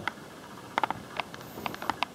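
Handling noise from a toy's plastic-windowed box: a few light clicks and taps, clustered from just under a second in to near the end.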